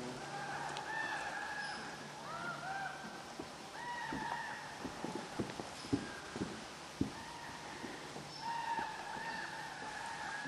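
Faint calls, each rising then falling and about half a second long, repeated in small groups, with a few sharp clicks or snaps around the middle.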